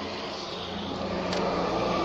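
Road traffic passing on a wet road: a steady rumble of engines and tyre noise that grows gradually louder as a vehicle goes by.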